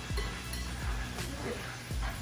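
Wire whisk stirring in a glass bowl of butter sauce, clinking lightly against the glass a few times.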